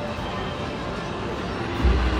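Casino floor din: a steady mix of slot machine electronic chimes and jingles with murmuring voices, and a low thump near the end.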